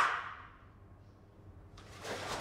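The end of a karateka's kiai shout dying away in the room over the first half-second, then quiet with a faint snap of the karate uniform or a step on the mat near the end.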